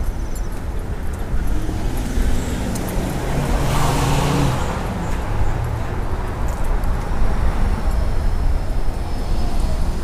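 Street traffic: a car passes on the road, swelling and fading about four seconds in, over a steady low rumble of traffic.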